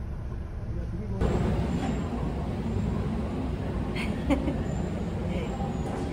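A steady low background rumble that steps up abruptly, louder and fuller, about a second in, with a couple of sharp clicks around four seconds.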